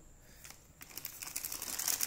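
Clear plastic zip bag crinkling as it is handled, with a dense crackle that starts about a second in.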